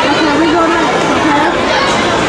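Indistinct voices and chatter of several people, a steady crowd babble with no clear words.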